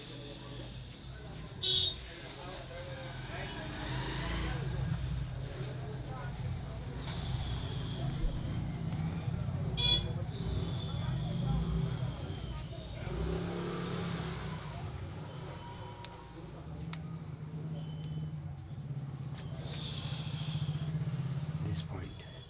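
Low, uneven rumble of passing road traffic, with cars and motorcycles going by. There are two sharp clicks, one about two seconds in and one about ten seconds in.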